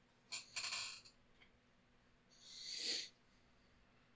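A person's breathing close to a headset microphone: a short breath soon after the start, then a longer breath that grows louder and stops sharply about three seconds in.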